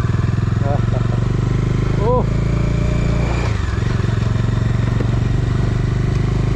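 Motorcycle engine running steadily under way, holding an even pitch, heard from the rider's seat.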